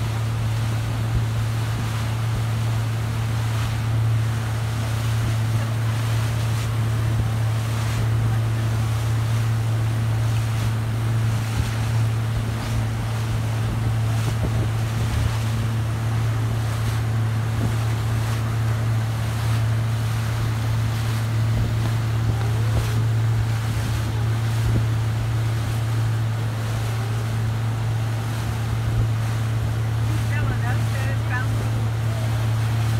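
Motorboat engine running steadily at towing speed, a constant low hum, with wind on the microphone and the rush of the boat's wake.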